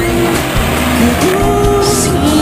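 Music playing over the hissing rush of ground firework fountains spraying sparks.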